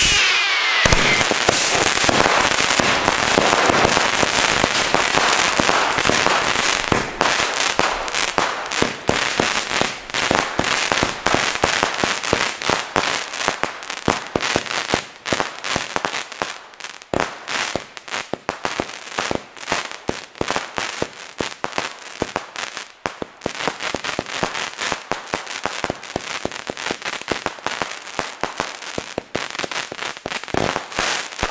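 Lesli Super Mad Dentist consumer firework battery firing. It opens with a loud, dense rush of shots, then from about seven seconds in goes on as a rapid, uneven string of sharp cracks.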